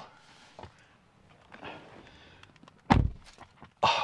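Soft rustling of a person shifting on a car's rear seat, then a single dull thump about three seconds in as his body or legs knock against the seat and seatback while he settles in.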